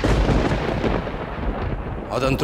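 A thunder-like dramatic sound effect: a deep rumbling boom that starts abruptly and sustains for about two seconds, easing slightly near the end, laid over a shocked reaction shot.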